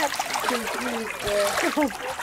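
Bare feet wading and splashing through shallow muddy water, with short wordless voice sounds over it.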